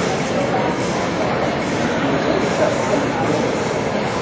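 Steady background noise of a large indoor arena, with indistinct voices mixed in.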